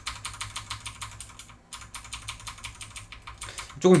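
Computer keyboard typing: a rapid run of light key clicks, about seven a second, with a brief pause near the middle.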